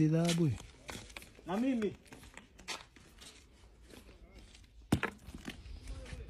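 Two short voice sounds in the first two seconds, then faint rustling and ticks, with one sharp click about five seconds in.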